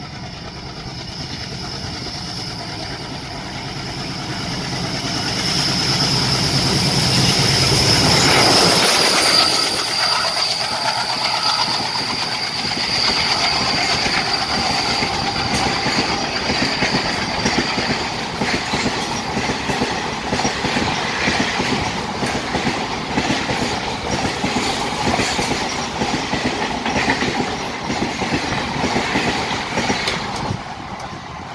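A WDG-3A diesel locomotive hauling an express passenger train past at speed: its engine's deep drone grows louder as it approaches, peaks about eight seconds in, then drops away. The coaches follow with a steady clickety-clack of wheels over the rails. A thin high whine from the wheels runs through the first half.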